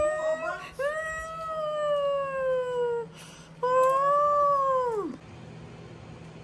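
A small white dog whining in long, drawn-out cries: one trailing off at the start, another of about two seconds that slowly falls in pitch, and a last one that drops away sharply about five seconds in.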